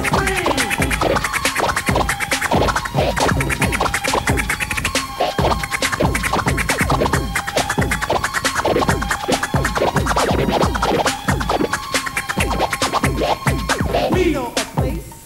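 Vinyl record scratched by hand on a turntable over a rhythmic beat, fast back-and-forth strokes of the record chopped by the mixer's crossfader.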